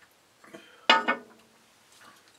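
A drinking glass holding iced fruit punch is set down on a wooden tabletop. It clinks twice in quick succession about a second in, with a brief ring.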